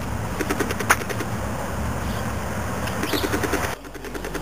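Birds chirping outdoors over a steady low rumble, with a single sharp click about a second in. The sound breaks off abruptly just before the end.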